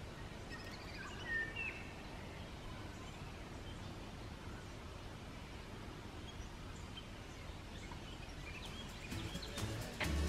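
Faint outdoor ambience in open woodland, with a few brief bird chirps about one to two seconds in.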